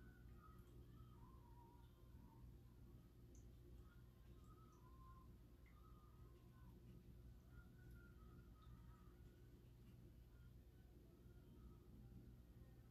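Near silence: room tone with a faint steady low hum and faint scattered chirps.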